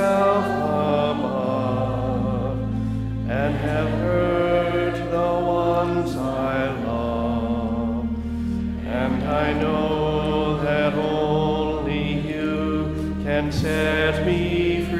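A worship song played and sung: voices over an accompaniment of held low bass notes that change chord every few seconds.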